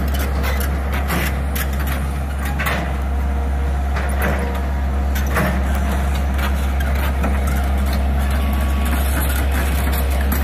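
Diesel engine of a John Deere 160LC excavator running steadily under work, a constant low drone, with scattered clanks and knocks throughout.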